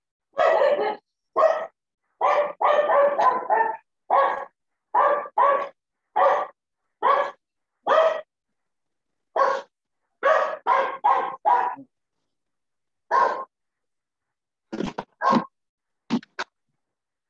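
A dog barking repeatedly over a video call, about twenty short, loud barks in irregular runs, with a pause before a last few near the end.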